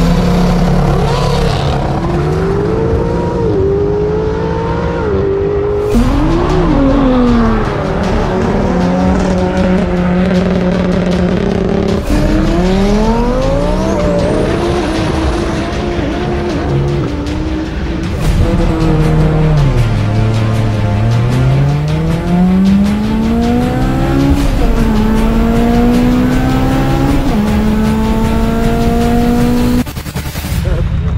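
Race car engines accelerating hard at full throttle, each pitch climbing and then falling back at a gear change, in short clips that cut off suddenly about every six seconds. Background music with a steady low beat runs underneath.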